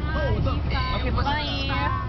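Several people's voices in a car cabin, over the steady low rumble of the moving car.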